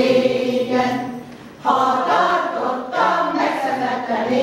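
Women's choir singing unaccompanied in held, sustained notes. The singing drops away briefly about a second in, a breath between phrases, and the next phrase starts at full strength.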